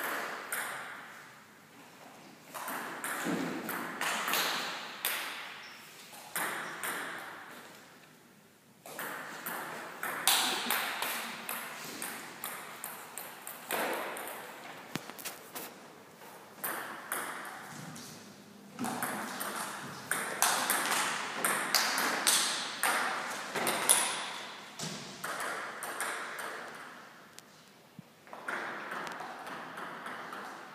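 Table tennis ball being struck by rubber paddles and bouncing on the table in quick rallies. Each hit echoes briefly in the hall, and the rallies are broken by pauses of a few seconds between points.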